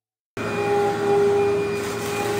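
An upright vacuum cleaner running on carpet: a steady motor hum over rushing air. It cuts in suddenly about a third of a second in.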